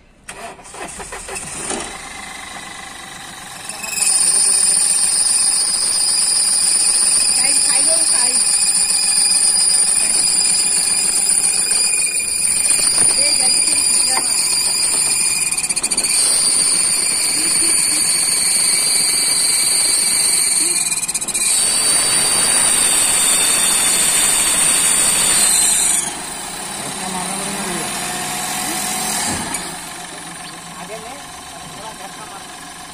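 Crash-damaged Mahindra Bolero's engine starting and running with its front end stripped open. From about four seconds in, a loud, steady high-pitched whine rides over the engine; a few seconds before the end it drops away and the engine runs on more quietly.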